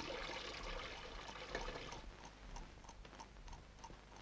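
Faint running water that thins out about halfway through, followed by a few soft ticks.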